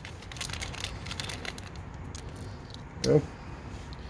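Small plastic hardware bag crinkling as it is torn open, with light clicks of small screws tipping out onto a concrete floor.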